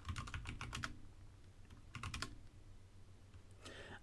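Typing on a computer keyboard: a quick run of keystrokes in the first second, then a few more about two seconds in, entering terminal commands to clear the screen and list the directory.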